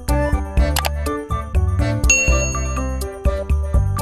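Background music with a steady beat, and a single bell ding about two seconds in that rings for about a second.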